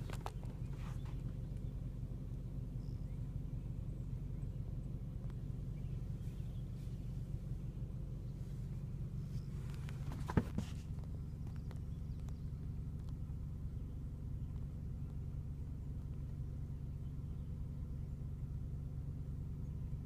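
Car engine and road hum heard from inside the cabin, running steadily throughout. A single sharp knock about ten seconds in, with a few faint clicks near the start.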